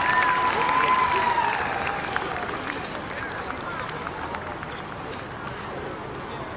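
Audience applause and crowd chatter dying down, with a long high call from the crowd near the start.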